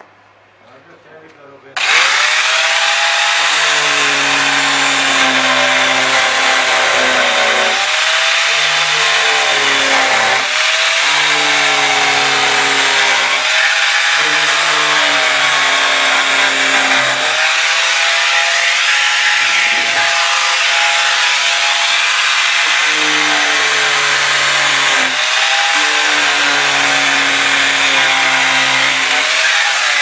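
Electric angle grinder with a cutting disc starting up about two seconds in and cutting steadily through a plastic drum. Its motor whine dips and recovers as the disc bites.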